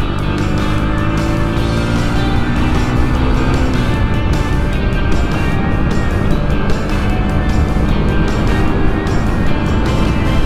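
Yamaha YB125SP's 125 cc single-cylinder four-stroke engine running steadily while the motorcycle is under way, mixed with background music.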